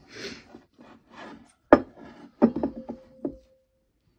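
Hands stretching and folding soft, sticky bread dough in a glass bowl: a rubbing, squelching scrape first, then several sharp knocks and slaps against the bowl about halfway through, the last ones leaving the glass ringing briefly.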